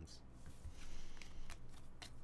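Trading cards being gathered and slid against each other in the hands: a dry rustle with a few light clicks.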